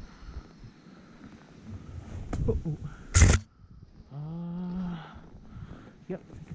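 Skis running through deep fresh powder snow, a soft hiss, with a brief loud burst of noise about three seconds in. About four seconds in comes a wordless voiced sound from the skier, about a second long, rising slightly and then falling.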